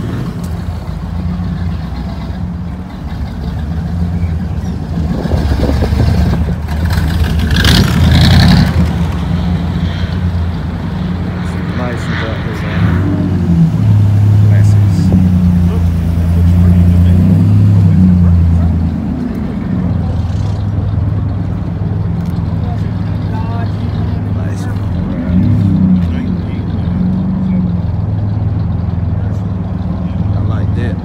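Car engines running at low speed as vehicles roll past, a deep steady rumble that swells louder twice, around a quarter of the way in and again near the middle.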